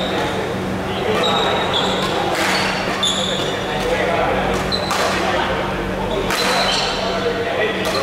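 Badminton rally in a large, echoing hall: rackets strike the shuttlecock three times, about two and a half, five and six and a half seconds in, while shoes squeak briefly on the wooden court floor. Voices chatter in the background over a steady low hum.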